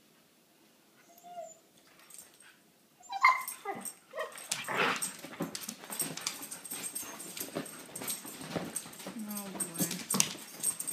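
Two huskies play-fighting: after a quiet start, a sudden loud pitched dog cry about three seconds in, then continuous scuffling and scrabbling mixed with growly, pitched dog vocalisations, with a drawn-out low vocal sound near the end.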